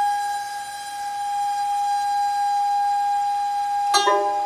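Nanguan ensemble holding one long, steady note on the xiao end-blown flute with the erxian bowed fiddle, then a plucked stroke on the pipa and sanxian near the end.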